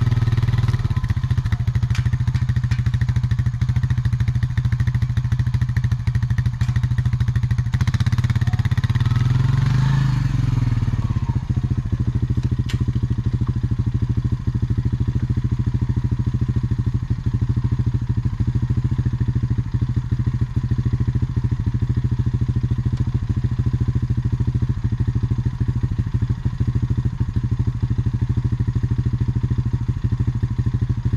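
ATV (four-wheeler) engine running: it revs up and back down briefly about eight to ten seconds in, then settles to a steady idle.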